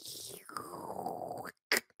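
A person's long breathy exhale, a sigh, lasting about a second and a half and stopping abruptly.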